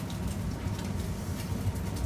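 Steady commercial-kitchen background hum and hiss, with a faint trickle of clear fish consommé being poured from a small glass flask into a small glass.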